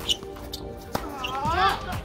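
Two sharp tennis-ball impacts on a hard court, about a second apart, then a short voice call that rises and falls, over steady background music.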